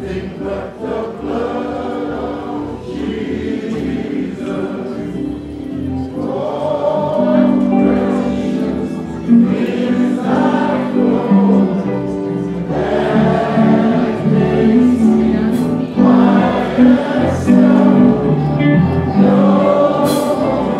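Church choir singing a gospel hymn with instrumental accompaniment, long held chords underneath the voices.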